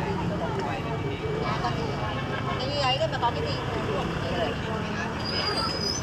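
Background talk from several voices over a steady low engine hum, with a brief thin high tone near the end.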